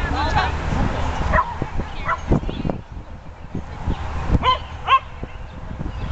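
A dog barking in short, sharp yips: two near the start and two louder ones about four and a half seconds in.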